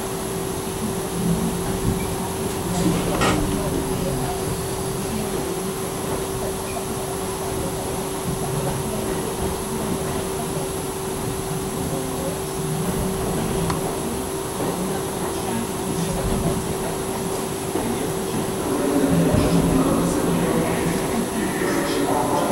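Interior of a 1985 R62A New York City subway car in motion: steady wheel and track rumble with a constant hum, running past station platforms. The noise swells somewhat near the end.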